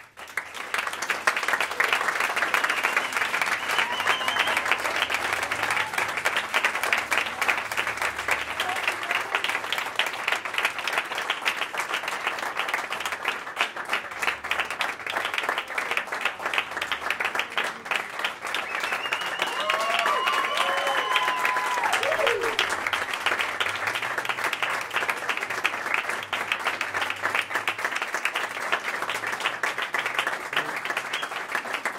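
Audience applauding, breaking out at once and going on steadily. About twenty seconds in a voice calls out in a few gliding shouts of cheering over the clapping.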